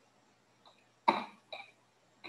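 A person coughing once about a second in, with a smaller short sound just after.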